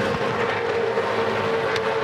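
A pack of V8 Supercars touring cars racing together, their V8 engines making a steady, dense engine note with no rise or fall.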